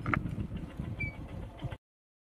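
Wind buffeting the microphone outdoors, an uneven low rumble, with a short high chirp about halfway through. The sound cuts off abruptly just before the end.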